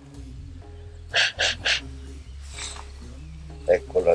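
A man blowing his nose hard into a cloth: three short blows in quick succession about a second in, then a weaker one.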